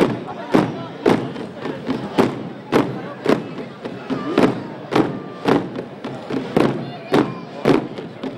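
A procession drum beating a steady, even slow march, a little under two strokes a second, over the murmur of a watching crowd.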